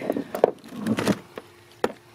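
A few scattered sharp clicks and knocks from a plastic fish-lip gripper being picked up and handled, the loudest click near the end.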